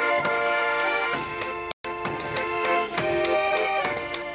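Polish folk band playing an instrumental passage led by accordion, with a bass drum striking the beat. The sound cuts out for an instant just before two seconds in.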